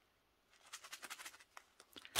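Near silence, broken about halfway through by a run of faint soft ticks: resin diamond-painting drills shifting in a plastic bag as it is handled.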